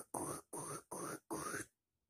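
A person's voice making a quick run of short breathy, unpitched noises, about three a second, that stop about one and a half seconds in.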